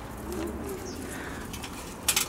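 Faint, low cooing calls of a bird, a couple of soft rising-and-falling notes about half a second in, over steady outdoor background noise.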